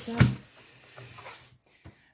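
A cardboard box full of coloured pencils set down on a desk: one short knock about a quarter second in, followed by faint shuffling.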